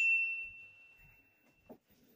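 A single high, bell-like ding, struck just before and ringing out as one steady tone that fades away over about a second and a half. A faint knock follows near the end.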